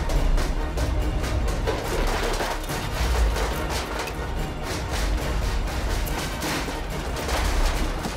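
Loud, driving action film score with dense, rapid percussion hits over a heavy low rumble.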